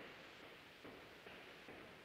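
Near silence: faint room tone of an online call, with a few very faint soft ticks.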